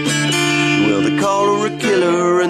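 Acoustic guitar strumming chords, several strokes ringing on into one another.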